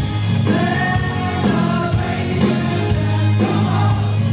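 Live band playing a song with a singer, the voice carried over a steady bass line.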